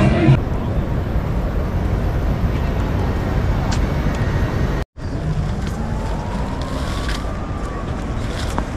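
Steady outdoor noise, a low rumble and hiss like wind on a walking camera's microphone, with faint distant voices. Background music cuts off just after the start, and the sound drops out completely for an instant about five seconds in.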